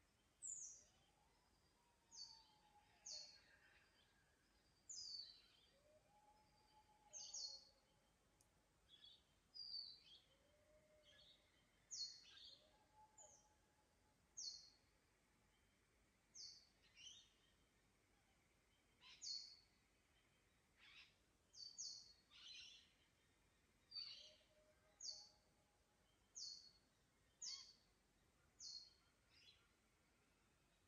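Faint dawn forest birdsong: one bird repeats short, high, falling chirps about once a second, while fainter, lower whistled calls from another bird come and go.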